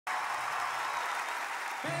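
A large audience applauding. Near the end the applause gives way to a voice starting to sing over sustained musical notes.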